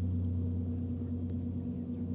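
A steady low hum made of a few fixed tones, unchanging throughout, with a faint noise floor underneath; no impact or blast is heard.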